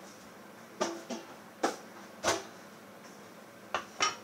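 About five sharp, irregular knocks of a cooking utensil against a metal wok, each with a brief ring.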